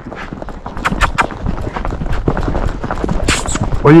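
A horse's hooves striking asphalt in a quick run of clip-clop hoofbeats, with a brief hiss a little after three seconds in.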